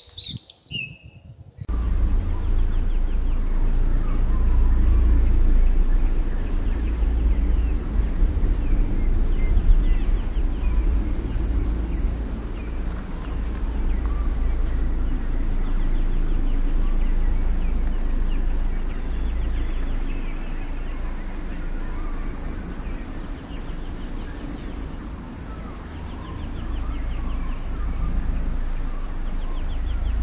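Outdoor ambience: birds chirping faintly now and then over a steady low rumble.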